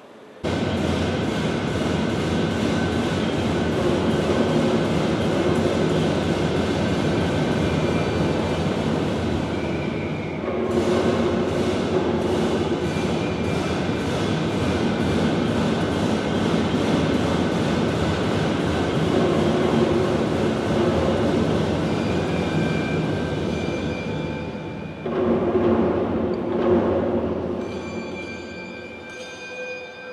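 A loud, sustained percussion roll on drums, with steady ringing tones above it. It starts suddenly, dips briefly about ten seconds in, and thins out near the end.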